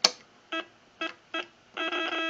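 A sharp click as the Ten-Tec Century 21's set-drive button is pressed, then the rig's sidetone: three short beeps, then a steady held tone from near the end as the transmitter is keyed to set the drive.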